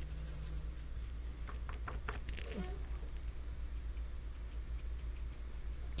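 Faint scratches and taps of a paintbrush dabbed with its side onto watercolour paper, several in quick succession in the first two or three seconds, over a low steady hum.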